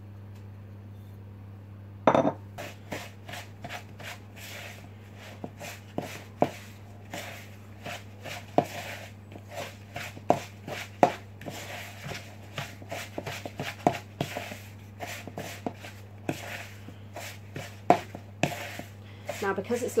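Wooden spoon creaming soft low-fat spread and caster sugar in a plastic mixing bowl: irregular knocks and scrapes of the spoon against the bowl, starting about two seconds in, over a steady low hum.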